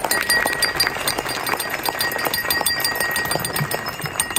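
A crowd of guests applauding: dense, steady clapping, with a thin steady high tone underneath.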